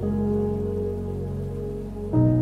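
Soft background music of held, sustained chords, with no singing.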